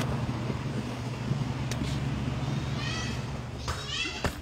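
Steady low hum of a big store's refrigeration and ventilation, with a short high-pitched squeal about three seconds in and another brief one near the end.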